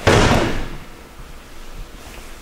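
Two judoka hitting the judo mat at the end of a sumi gaeshi throw: one loud thud with the slap of the breakfall right at the start, dying away within about half a second.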